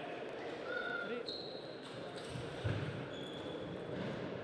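Table tennis serve and opening rally: the plastic ball ticking off bats and the table, with short squeaks of shoes on the court floor and a heavier thump a little past halfway.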